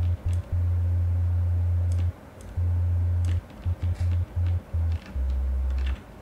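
Low synth bass from the Diversion software synth, played on a keyboard as a string of short and long notes, with the last note lower than the rest. The tone is dull, with little above the bass, because the envelope's modulation of the low-pass filter cutoff has not yet been turned up. Faint clicks come between some notes.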